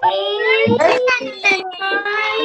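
Several young children's voices at once, in long, held sing-song tones, mixed together from open microphones on a video call.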